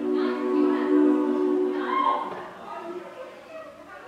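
Women's a cappella group singing a sustained, held chord, with a brief gliding voice on top about two seconds in; the chord is released there and the singing goes quieter and more broken for the rest.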